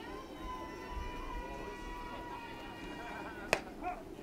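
Pitched softball smacking into the catcher's mitt: a single sharp pop about three and a half seconds in, over faint background voices from the stands.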